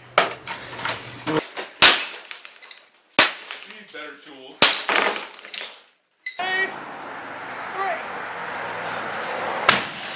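CRT television picture tubes being smashed: several sharp, separate hits a second or more apart, each with glass breaking and ringing.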